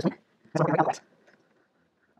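A man's voice in one short, mumbled utterance of about half a second, followed by a few faint clicks.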